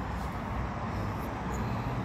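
Steady low hum with a faint even hiss of background noise, with no distinct events.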